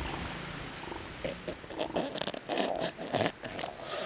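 Young northern elephant seal snorting and grunting: a rough, irregular run of throaty pulses that starts about a second in and grows louder toward the end.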